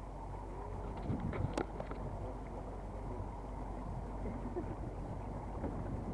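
Small boat's motor running steadily as the boat moves through the water, with water washing along the hull and a few short knocks just over a second in.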